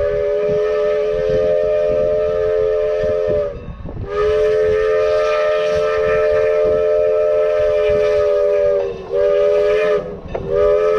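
Norfolk & Western 475 steam locomotive's whistle sounding a chord of several notes: a long blast of about three and a half seconds, a longer one of about five seconds, then a short blast near the end, each dropping slightly in pitch as it shuts off. A low rumble of the approaching train runs underneath.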